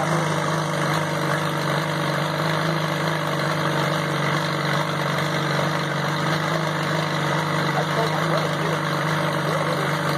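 Caterpillar RD4 bulldozer engine idling steadily, running again after sitting for 20 years.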